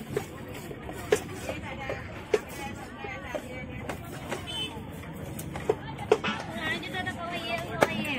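A large knife chopping through a surmai (king mackerel) onto a wooden block, cutting it into steaks: about six sharp, irregularly spaced chops over the murmur of market voices.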